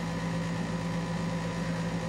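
A steady low hum of a running machine with no other events; it holds level throughout.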